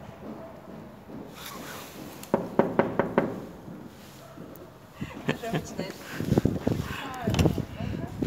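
A person's voice talking, with a quick run of about five short sharp sounds a little over two seconds in.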